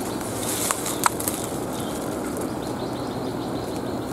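Steady rustling of bush leaves and twigs, with two small clicks about a second in.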